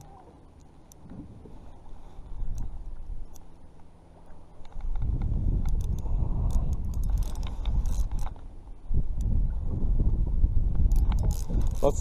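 Daiwa Fuego spinning reel being cranked against a heavy, hooked striped bass, its gears and handle working close to the microphone. It gets much louder about five seconds in and stays so, with scattered clicks.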